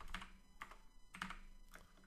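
Typing on a computer keyboard: a handful of light, irregularly spaced keystrokes.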